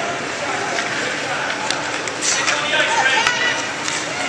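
Indistinct voices of spectators echoing in an indoor ice rink, with two sharp clacks, one at under two seconds in and one near the end.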